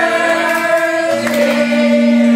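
Several voices singing together like a choir, in music, with sustained notes; a strong long note begins about a second in.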